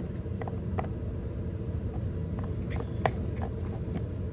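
A few faint, scattered clicks of a screwdriver and metal parts on a small chainsaw carburetor being handled, over a steady low hum.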